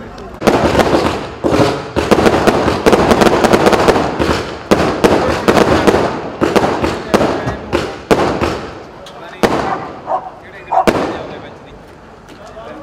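Aerial fireworks bursting in a rapid barrage of bangs and crackles, thinning out later on, with a few separate sharp bangs near the end.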